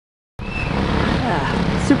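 Several racing kart engines running together, cutting in abruptly about half a second in.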